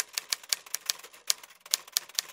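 Typing sound effect: a quick, even run of keystroke clicks, about six a second, laid under a caption that is typed out letter by letter on screen.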